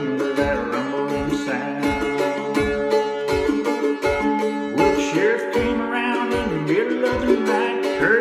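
F-style mandolin picking an instrumental passage of quick notes and chords, over a steady low thump about twice a second.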